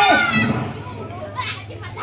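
A long, loud held vocal call that drops in pitch and ends just after the start, followed by quieter children's voices and chatter.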